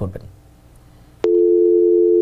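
Telephone dial tone on the studio's call-in line, a steady two-note hum that starts abruptly just over a second in: the line is open with no caller connected.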